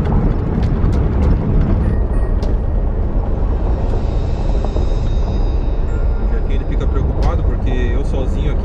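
Steady low rumble of a pickup truck driving on a dirt road, heard from inside the cab: engine and tyres on the unpaved surface.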